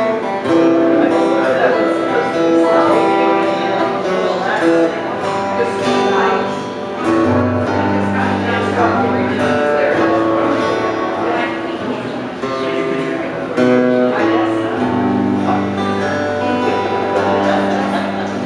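Acoustic guitar strumming a slow country ballad accompaniment, with held chord notes over a low bass line that change every second or so.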